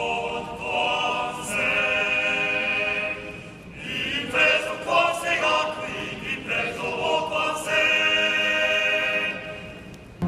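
A large group of voices singing together, holding long notes, with a short lull about three seconds in.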